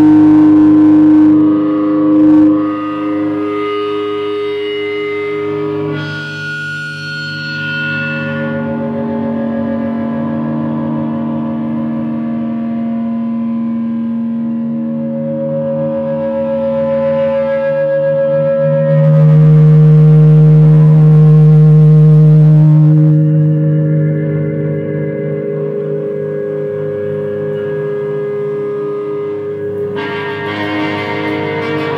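Electric guitar feedback: several sustained, droning tones layered together, each holding and then sliding or stepping to a new pitch. A noisier, rougher stretch comes about a quarter of the way in, and the drone swells to its loudest a little past the middle before easing back.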